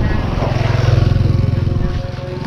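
A motorcycle engine running close by with fast, even firing pulses, swelling to its loudest about a second in and easing off near the end.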